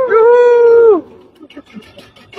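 A loud, drawn-out howling cry, held on one pitch for about a second, then sliding down and breaking off.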